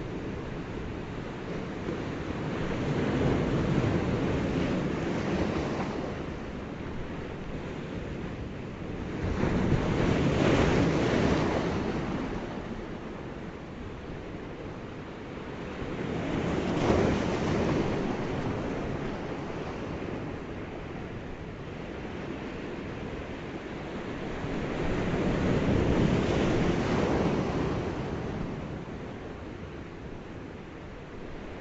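Ocean waves washing in: a rushing noise that swells and ebbs in slow surges, cresting four times.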